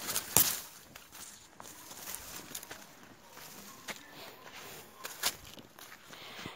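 Footsteps on dry ground and the rustle of dry bean plants brushed in passing, with a few sharp clicks, the loudest just after the start and another about five seconds in.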